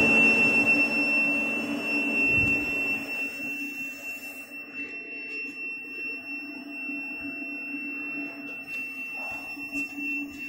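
CO2 laser cutting machine running: a steady high-pitched whine over a low hum. An airy rushing sound fades away about three to four seconds in.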